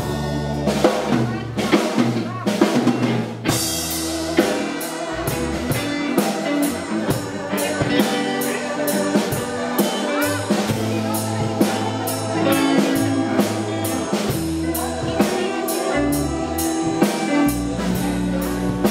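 Live rock band playing: electric guitars and keyboard over a drum kit keeping a steady beat.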